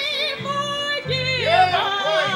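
A woman singing a solo, holding long notes with a wide vibrato, over instrumental accompaniment with a low bass line.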